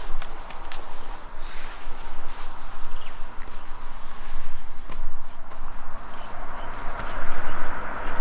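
Footsteps on grass, with irregular light clicks and rustling, over a steady low rumble of wind on the microphone.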